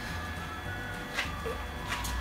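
Low steady hum of the aquarium's running circulation pumps, with two short light clicks, about a second in and again near the end.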